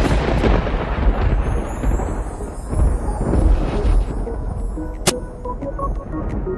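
A loud thunder-like rumble with heavy bass, swelling suddenly just before the start and slowly dying away over several seconds, mixed into reggae radio music; a single sharp crack comes about five seconds in.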